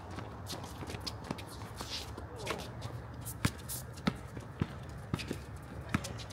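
A basketball bouncing on an outdoor hard court: sharp irregular bounces, coming about every half second in the second half like a dribble, amid the scuffing and running footsteps of players. A short shout about two and a half seconds in.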